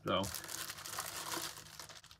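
A soft crinkling rustle, as of something being handled, after a single spoken word.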